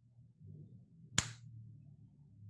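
A single sharp click with a short ring after it, about a second in, over a low steady hum.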